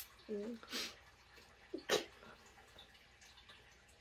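A mostly quiet room with a few brief stifled giggles and puffs of breath, the sharpest about two seconds in.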